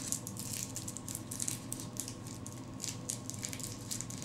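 Plastic packaging crinkling and rustling in irregular crackles as a makeup brush is worked out of its pack.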